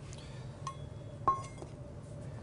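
A small metal measuring cup clinking lightly twice, a bit over half a second apart, each clink leaving a short ring.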